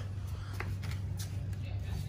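Rustling and a few light clicks of a phone being handled as it is swung down to point at the tire, over a steady low hum.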